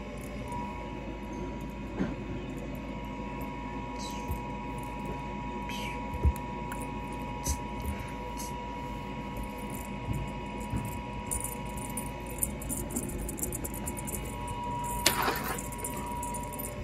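Cat playing with a wand toy on carpeted stairs: scattered soft rustles and light taps of paws and cord, with a louder rustle about a second before the end. A steady high hum runs underneath.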